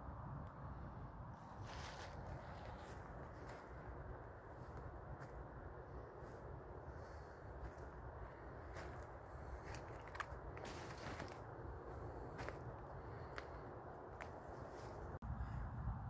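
Footsteps through dry fallen leaves on a forest floor, with scattered light crackles and snaps, over a low steady rumble.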